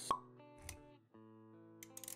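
Intro sound effects over background music: a sharp pop right at the start, then a softer low thud. Held music notes follow, with a quick run of clicks near the end.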